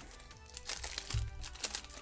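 A foil Pokémon booster-pack wrapper crinkling as the cards are slid out and handled, in short crackles, over quiet background music.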